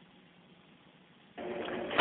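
Near silence, then about one and a half seconds in a steady hiss comes up: static of an open air traffic control audio channel just before the next transmission.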